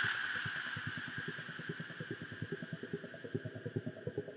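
Psytrance breakdown: a quiet, rapidly pulsing synth bass line, about nine pulses a second, that fades down over the first couple of seconds and then carries on softly.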